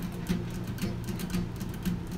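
Acoustic guitar strummed steadily and fairly softly, about three strums a second, chords ringing between strokes.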